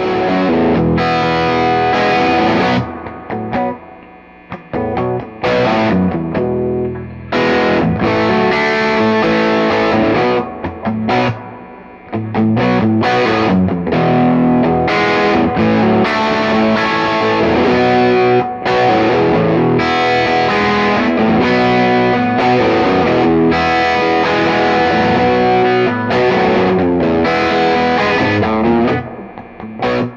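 Heritage H-530 fully hollow-body electric guitar with Lollar P90 pickups, played with overdrive through an amplifier in old-school rock riffs. The riffs break off briefly a few times, near 4 seconds, 7 seconds and 12 seconds, and stop just before the end.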